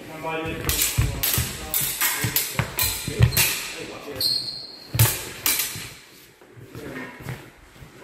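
Rapier-and-dagger sparring on a sports-hall floor: a fast run of knocks and clacks from steel blades meeting and feet stamping, with a short high ringing tone about four seconds in. It settles down in the last two seconds, and the hall's echo carries every hit.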